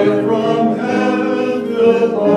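Mixed church choir of men's and women's voices singing together in held chords.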